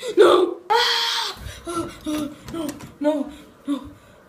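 A person's voice without words: a loud held cry about a second in, then a string of short, choppy hiccup-like sounds, about three a second, trailing off near the end.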